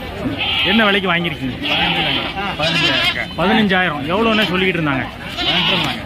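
A goat bleating amid the steady talk of a crowded livestock market.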